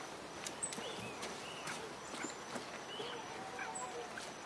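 Faint outdoor ambience with short, scattered animal chirps and occasional sharp clicks over a steady background noise.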